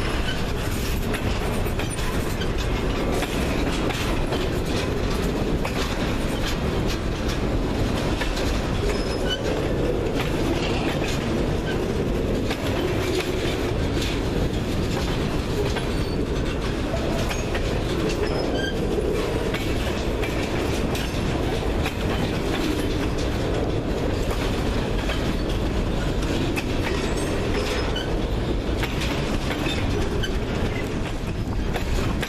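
Freight cars rolling past close by. Steel wheels click over the rails under a steady, continuous rumble, as boxcars give way to empty centerbeam flatcars.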